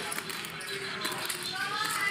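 Poker chips clicking against each other as a player handles a stack of chips, over a low murmur of voices. Faint music comes in near the end.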